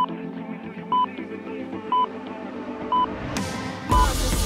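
Interval-timer countdown beeps: four short, identical electronic beeps one second apart, counting down the last seconds of the rest before the next work interval. Background music plays underneath and swells near the end.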